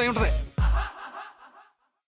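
A man speaks a last word, then two deep drum hits about a third of a second apart sound as a TV background-score stinger and fade away over about a second.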